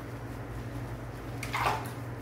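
Water sloshing and splashing in a basin as a small dog is lathered and washed by hand, with one louder splash about one and a half seconds in, over a steady low hum.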